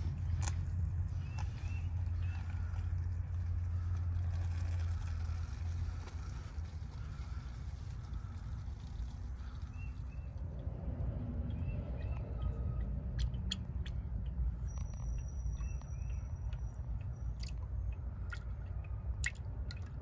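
Warm engine oil draining in a steady stream from a truck's oil pan into a bucket, a low continuous pouring sound, a little quieter after about six seconds. A few faint clicks come in the second half.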